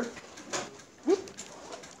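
Quiet room tone with a short rising vocal sound about a second in.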